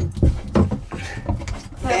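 Hands handling the drain valves on PEX water lines: a few light knocks and taps in the first second, then softer scattered handling knocks. Speech returns right at the end.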